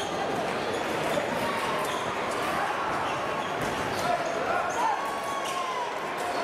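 Fencing shoes squeaking on the piste in a few short squeals, with scattered light clicks, over the steady murmur of voices in a large hall.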